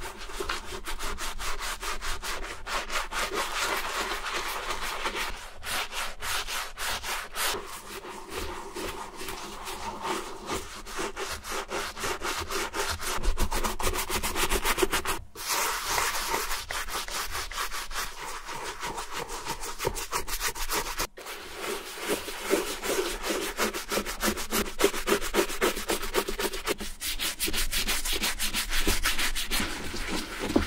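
A wooden-handled brush scrubbing soapy lather into the leather of a Red Wing boot in quick back-and-forth strokes. There are brief breaks about 15 and 21 seconds in.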